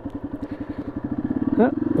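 Motorcycle engine running at low speed as the bike rolls slowly, with a steady, even, rapid beat.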